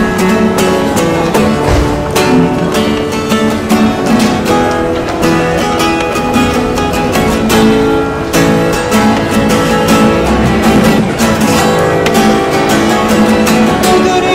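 Acoustic guitar played solo: fast rhythmic strumming with picked notes ringing between the strokes.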